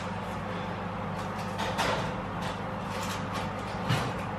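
Kitchen background: a steady low hum with scattered light clicks and small knocks, a louder knock just before the end.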